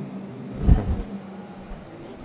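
Quiet hall ambience: a steady low hum with a soft, brief low thump about three quarters of a second in.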